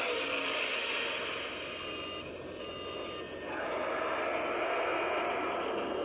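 Film-trailer sound effects of a propeller aircraft in flight, a steady engine and wind noise, heard through a phone's small speaker, with two faint short beeps about halfway through.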